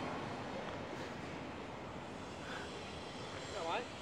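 Steady, even hum of city street traffic with no distinct events.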